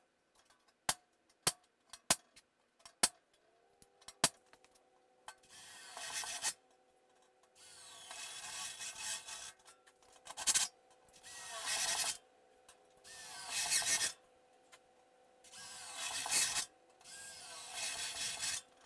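Hammer striking a punch against a sheet-steel floor pan, about five sharp taps in the first four seconds. Then a cordless drill with a step bit cuts holes through the steel floor pan in short bursts of a second or so, about six times.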